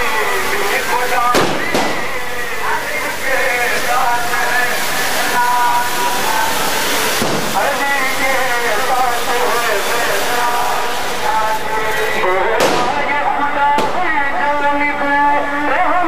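Firecrackers going off amid a crowd: about four sharp bangs, two of them close together near the end. Behind them runs the continuous loud din of many people's voices.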